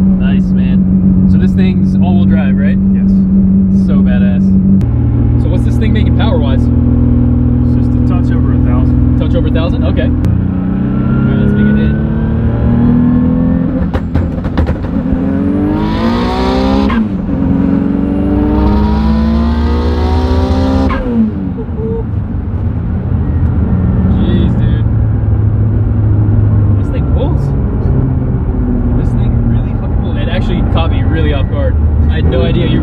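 Mitsubishi 3000GT VR-4's turbocharged V6, built to about 1200 hp on 40 psi of boost, heard from inside the cabin. It runs steadily at low revs, then from about ten seconds in pulls hard through two gears, the revs climbing with a high whistle rising over each pull and a drop at the shift between them. It then eases back to a steady cruise.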